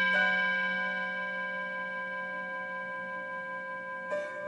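Meditation music of slow, bell-like struck tones. A new note sounds just after the start and rings on, fading slowly over the rest of the previous tone.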